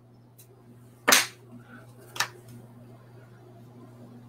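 Three sudden sharp clicks about a second apart, the second one loudest, over a low steady hum.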